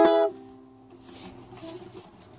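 Ukulele strummed once on an E chord, fretted at the fourth fret on the G, C and E strings; the chord rings and fades away over about a second.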